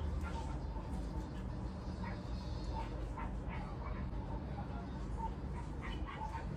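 A steady low hum with a few faint, short squeaks scattered through it.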